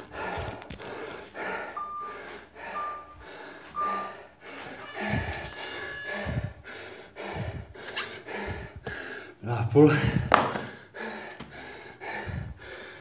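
A person panting hard and fast close to the microphone, about two breaths a second, out of breath from a CrossFit workout. Three short beeps sound about two to four seconds in, and a couple of heavier knocks come near the end.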